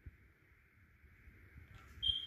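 Near silence: room tone, with a faint low bump just after the start.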